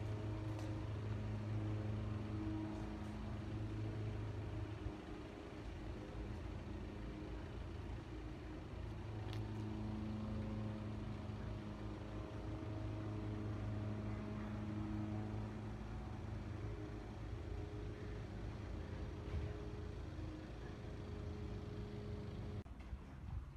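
A steady low mechanical hum with a few held tones above it that swell and fade.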